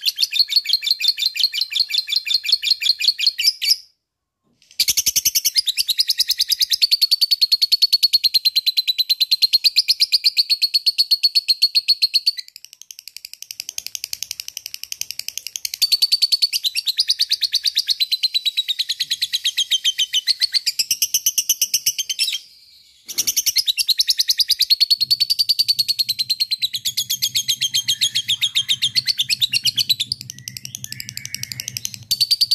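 Lutino peach-faced lovebird giving long bouts of ngekek: a fast, high-pitched rattling chatter. The chatter cuts off abruptly about four seconds in, goes softer for a few seconds near the middle, and breaks briefly again about 22 seconds in. A faint low steady hum sits under it near the end.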